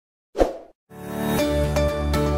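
A short pop sound effect as an animated like button is clicked, then an outro music jingle with steady pitched notes and bass starts about a second in.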